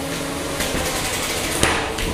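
Spinning drum weapons of two 3 lb combat robots whining steadily, with a few sharp metal impacts as they clash, the loudest near the end.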